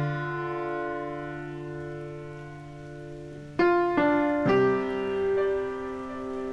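Background piano music: a chord held for a few seconds, then three notes struck in quick succession about three and a half seconds in, and a new chord left ringing.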